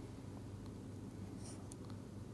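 Faint scratching and tapping of a stylus writing on a tablet screen, over a low steady hum.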